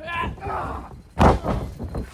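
A wrestler's body slamming down onto the ring floor in a takedown: one loud, heavy thud about a second in, after a brief shout.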